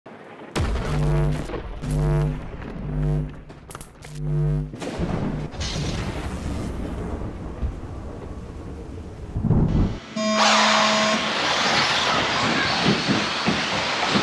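Intro music with four heavy pitched hits and a thunder-like boom, rising to an impact. About ten seconds in it gives way to a steady hiss of electric 1/10 RC buggies running on an indoor carpet track, with a brief tone near the start of it.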